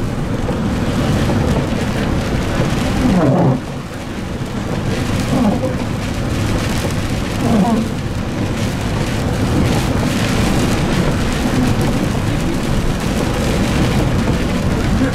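A MAN Lion's City CNG city bus driving, heard from the driver's cab: a steady rush of natural-gas engine and road noise, with the windscreen wiper sweeping across the glass.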